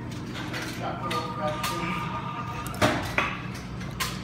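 Indoor shop background: indistinct voices, a thin steady high tone lasting about a second and a half, and two sharp knocks about three seconds in.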